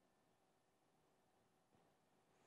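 Near silence: faint, even room tone with no distinct sound.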